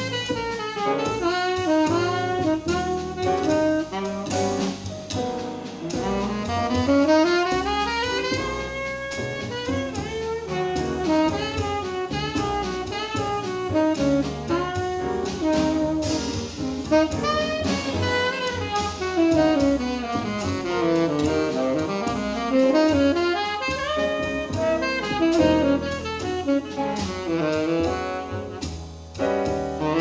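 Live jazz quartet playing a tune: tenor saxophone, piano, double bass and drum kit, with running melodic lines that sweep up and down over a steady bass and drums.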